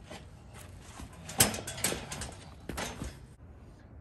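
Several sharp knocks and clanks from a four-wheel steel garden cart with two people standing on its deck, the loudest about a second and a half in.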